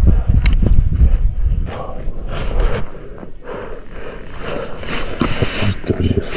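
Wind buffeting the camera microphone, heaviest in the first second or two, with a climber's crampon steps crunching on snow and rock.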